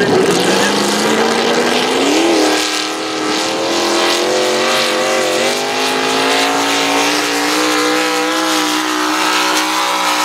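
Econo Rod class pulling tractor's engine at full throttle as it launches and pulls the sled down the track. The pitch climbs over the first two seconds and jumps briefly a little after two seconds in. It then holds high and steady, still creeping upward.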